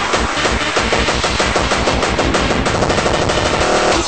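A fast, even run of hard hits, like machine-gun fire, from a gabber hardcore track: a rapid kick roll or gunfire sample played in the mix. A short steady tone comes in near the end.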